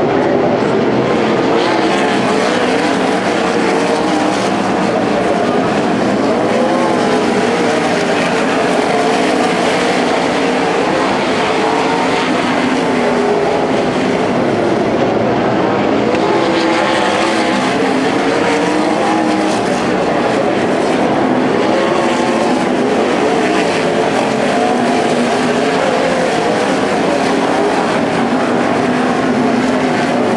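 A field of winged dirt-track sprint cars' V8 engines running together, several engine notes weaving up and down in pitch as the cars circle the oval.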